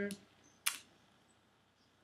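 A single short click about two-thirds of a second in, then near silence.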